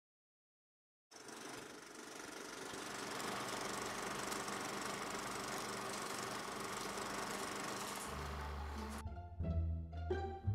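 Silent for about a second, then the steady whirr and fast rattle of a running film projector. Near the end low bass notes come in, followed by plucked string music.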